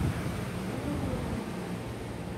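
Steady room noise, a low hum with hiss, with faint distant voices and a single sharp tap right at the start.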